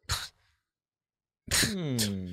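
A man's short breathy laugh, a second of dead silence, then a voiced sigh falling in pitch.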